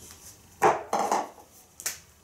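A hand wiping a whiteboard to erase a marker letter: two quick rough rubs about half a second in, then a short sharp click near the end as a marker is picked up.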